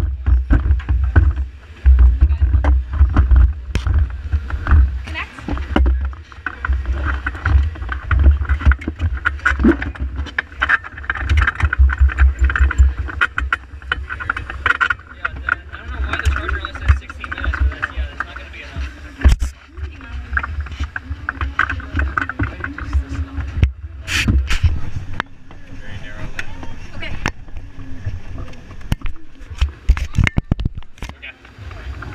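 Gusting wind buffeting the microphone outdoors, a heavy, uneven low rumble, with voices and chatter in the background.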